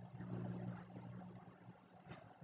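Near silence: a faint, steady low hum under the room tone of a video-call recording.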